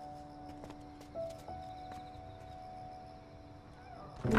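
Quiet background score: soft, long held notes that shift pitch a few times, with a few faint clicks.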